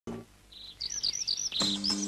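Birds chirping, with repeated high whistled chirps and trills. About one and a half seconds in, a steady low chord of music comes in under them. A short low sound sounds at the very start.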